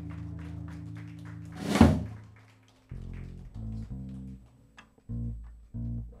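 A jazz band of electric guitars, fretless bass and drums holds its final chord, then closes the tune with one loud drum-and-cymbal crash about two seconds in that rings away. After that a handful of short, separate low plucked notes sound in the quiet.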